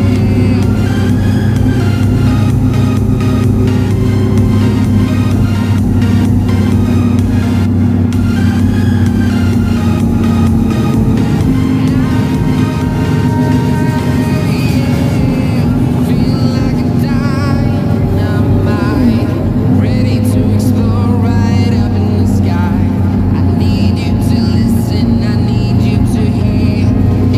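Music playing over the steady low drone of a bus engine while driving.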